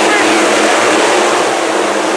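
A pack of IMCA Northern SportMod dirt-track race cars, V8 engines, running hard together in a loud, steady mix just after the green flag drops to start the race.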